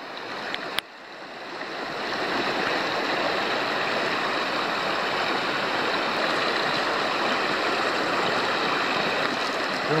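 Shallow mountain creek rushing over gravel and past a fallen log, a steady sound of running water. A single sharp click comes about a second in, just before the water sound swells up and holds steady.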